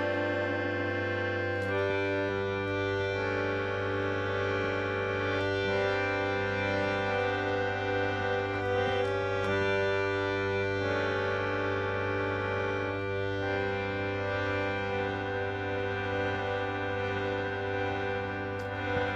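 Harmonium playing sustained reedy chords that change every second or two, an instrumental passage with no singing.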